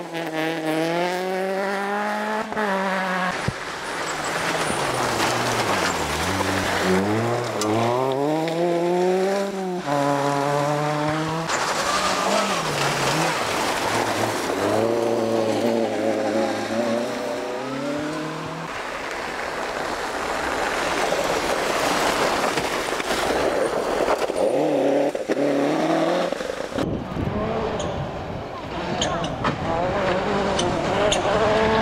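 Ford rally cars (Fiesta and Ka) passing one after another on a gravel forest stage. Their engines rev hard, rising and falling in pitch through gear changes and lifts, while the tyres work on loose gravel. Another car comes in near the end.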